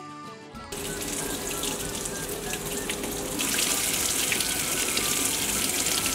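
Water from a kitchen tap running into a stainless-steel sink, starting suddenly and getting louder and hissier about three and a half seconds in. The stream strikes the bowl of a wooden spoon shaped to splash water everywhere, and the water sprays off it.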